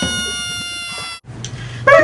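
A cappella voices holding a sustained note, with a couple of parts gliding down, cut off sharply just past a second in; a quieter low hummed bass tone follows until the sung melody starts at the very end.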